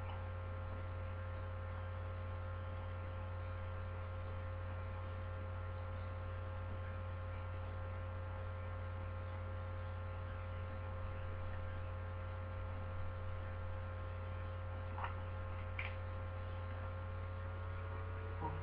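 Steady electrical mains hum on a webcam microphone's recording: a constant low hum with a set of fixed higher tones over it that never change. Two faint clicks near the end.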